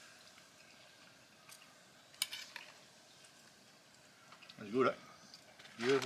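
Forks clicking lightly against bowls and a plastic plate as people eat, a few isolated clicks over a quiet background.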